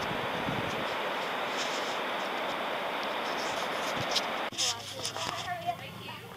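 Steady rushing of river water through a rapid over a rocky ledge. It cuts off suddenly about four and a half seconds in, giving way to a much quieter scene with faint voices.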